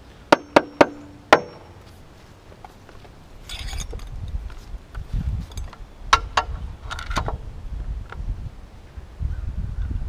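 Claw hammer driving a nail into a wooden rim board: four quick blows within about a second, each with a short metallic ring. After that comes a low rumble with a few scattered knocks and clatters.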